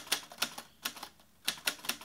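Typewriter keystroke sound effect: an irregular run of sharp key clicks, with a short pause about halfway through.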